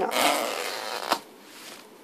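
Curling ribbon drawn up along an open scissor blade: a rasping scrape lasting about a second, ending in a sharp click. The pull does not curl the ribbon.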